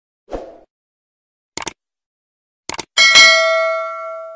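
Subscribe-button animation sound effects: a soft thump, two quick double mouse clicks, then a notification bell ding that rings out and fades.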